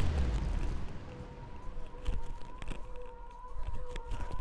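Electronic dance music fading out in the first second. Then sneakers thump and scuff on rubber gym flooring in irregular knocks during a lateral shuffle-and-tap drill, over a faint steady tone.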